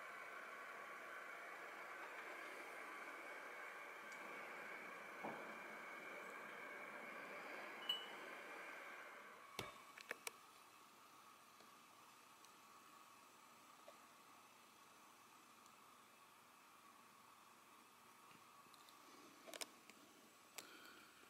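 Near silence: faint room tone with a steady hum that fades about nine seconds in, and a few small clicks.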